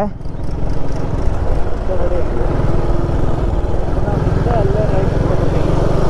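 Motorcycle engine running steadily while riding, heard from the rider's seat with heavy wind and road rumble on the microphone.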